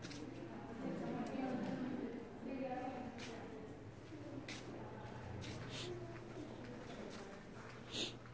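Faint, indistinct voices of people talking over a steady low hum, with a few short scuffs and a sharp click right at the end.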